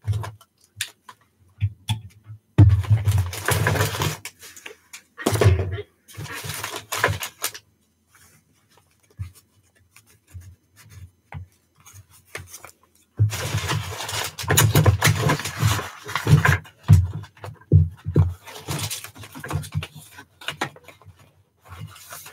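Paper rustling and crinkling as paper pieces and tags are handled and pressed onto a junk journal page, with dull bumps against the desk. It comes in irregular bursts, the longest lasting about three seconds and starting about halfway through.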